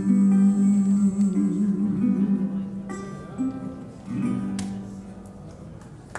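Acoustic guitar playing the closing chords of a song, getting quieter, with a last chord struck about four seconds in and left ringing as it dies away.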